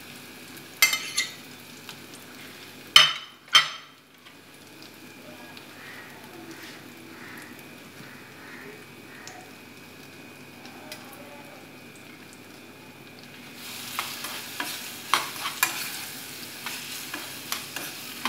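Chopped raw banana pieces sizzling in a saucepan on a gas stove, with a couple of sharp knocks against the pan about three seconds in. From about fourteen seconds in, a spoon scrapes and clacks against the pan as the pieces are stirred.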